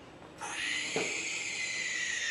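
An owl's screech played as a sound effect: one long, hissing shriek starting about half a second in and lasting about two seconds.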